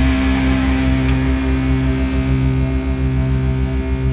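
Sludge metal guitars and bass holding a final chord that rings out and slowly fades. A fast low throb pulses under it, with amplifier hum.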